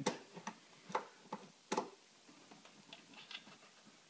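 A few faint, sharp clicks, about two a second for the first two seconds and then scattered fainter ticks: a Phillips screwdriver turning out a tail-light mounting screw.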